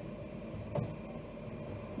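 Pastry dough being mixed by hand in a metal bowl: quiet rubbing and shuffling of hand and dough against the bowl, with one short knock a little under a second in.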